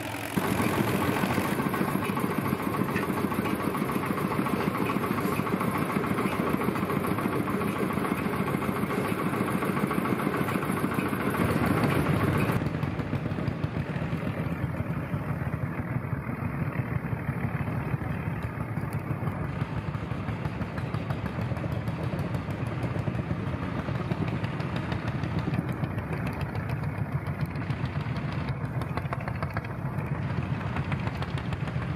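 Vintage tractor engine working under load as the tractor drags a weighted sled of a bucket and a log across dirt. About twelve seconds in, the sound changes abruptly to a steadier engine running at idle.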